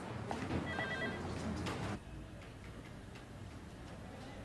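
Electronic telephone ringing: a short trill of quick, even beeps about a second in, followed by quiet room tone.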